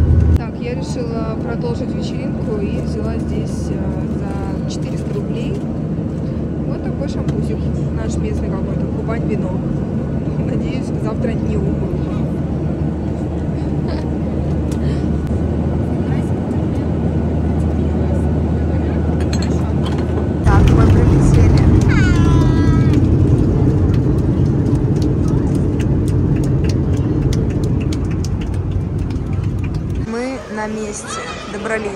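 Steady low drone of a jet airliner's engines heard from inside the passenger cabin, with passengers' voices faintly in the background. About two-thirds of the way in the drone jumps louder, and a voice is heard briefly just after.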